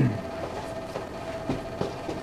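Steady room hum with a faint constant tone, broken by two small clicks, one about halfway and one near the end.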